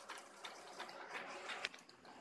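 A few faint, scattered ticks and clicks over quiet room noise.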